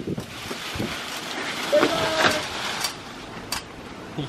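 Tree branches being cut back with a hand pruning saw: a rough rustling and scraping of wood and leaves, loudest about two seconds in, with a few sharp clicks near the end.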